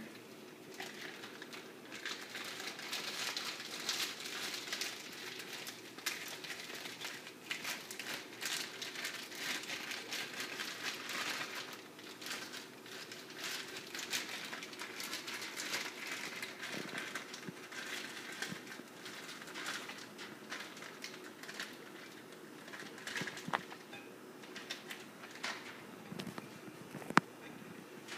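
Plastic zip-top bag crinkling and crackling irregularly as it is handled and turned inside out to free the warm cornstarch bioplastic, with one sharp click near the end.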